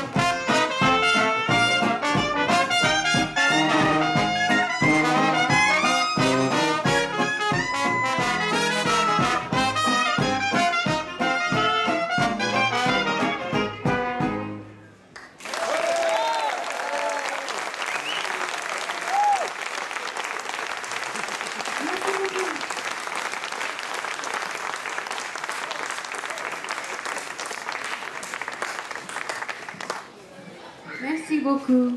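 Traditional New Orleans jazz band (cornet, clarinet, trombone, sousaphone and guitar) playing the closing bars of a tune, which ends together about halfway through. Audience applause follows, with a few scattered cheers.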